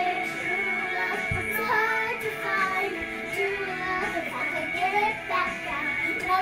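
A pop song playing from a small karaoke machine, with a young girl singing along over the recorded vocal.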